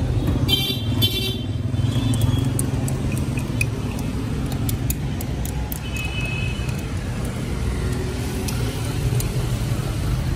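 Street traffic running steadily, with a vehicle horn beeping twice in the first second and a half and once more, briefly, about six seconds in.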